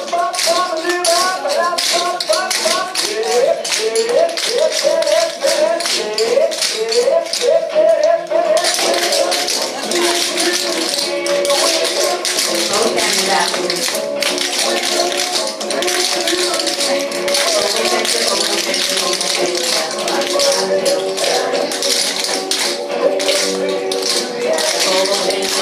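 Swing music playing with a group of tap dancers' shoes clicking on a wooden floor in time with it. The music gets fuller and brighter about eight seconds in.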